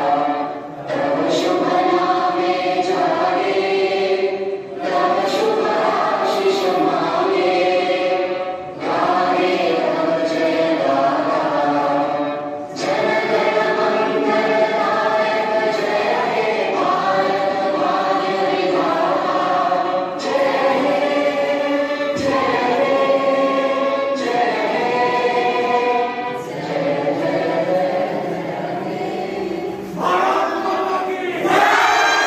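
A group of young voices singing together in unison, phrase by phrase, with a short breath pause every few seconds.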